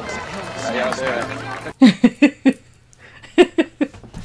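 A person laughing in two short bouts of rapid bursts, the first about two seconds in and the second near the end, over faint background voices.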